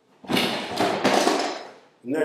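Rustling and a few knocks as workout gear is picked up and handled, in one noisy stretch of about a second and a half.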